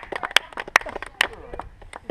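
A few spectators clapping, sharp separate claps about every half second that thin out near the end, with voices talking and laughing underneath.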